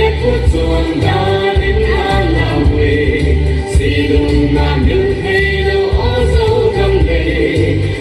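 A group of voices singing a tribal folk song together, over a loud, pulsing low accompaniment.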